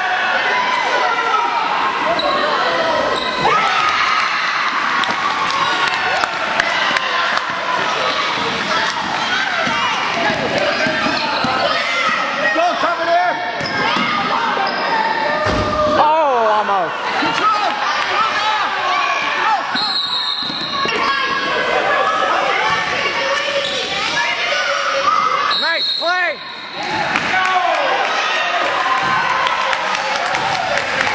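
Basketball bouncing on a gym floor during a youth game, with players and spectators shouting throughout, echoing in the hall.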